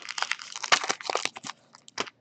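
Foil-wrapped football card packs crinkling as they are picked up and handled, a dense crackle for about a second and a half that thins to a few faint clicks.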